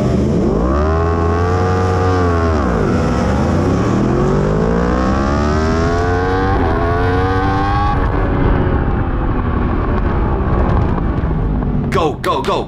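Yamaha R1 superbike's inline-four engine launching from a race start, heard from the onboard camera. Its revs rise and fall over the first three seconds, then climb in one long rising sweep as the bike accelerates hard in first gear. Later the engine's pitch is lost in a rushing noise as speed builds.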